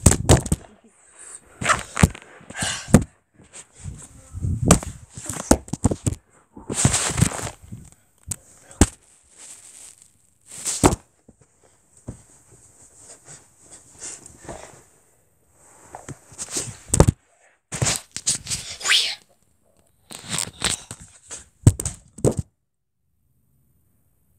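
Phone microphone handling noise: irregular rubbing, bumps and knocks as the phone is moved about and set down, stopping abruptly near the end.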